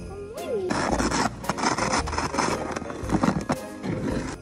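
A snow shovel's blade scraping along pavement as it pushes snow: a rough scraping that starts abruptly under a second in and comes in uneven strokes. Background music plays throughout.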